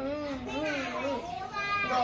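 A young girl's voice singing a lullaby, drawn-out notes wavering slowly up and down, with a brief higher held note near the end.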